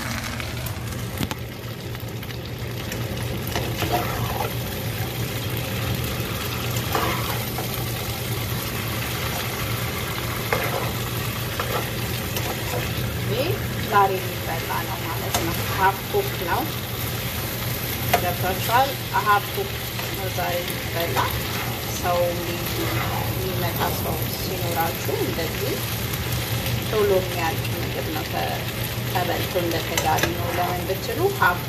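Vegetables sizzling as they fry in a pan, stirred with a spatula that scrapes against the pan in many short strokes, more often in the second half.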